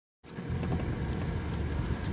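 Low, steady rumble of a vehicle interior, starting just after a brief dead silence at the very start.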